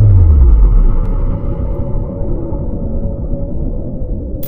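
Cinematic logo-sting sound effect: a deep boom whose pitch sweeps down over the first second, settling into a low rumble that slowly fades.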